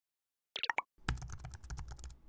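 Computer keyboard typing sound effect. A few key clicks come about half a second in, then a fast run of keystrokes with a low thud under them fills the second half.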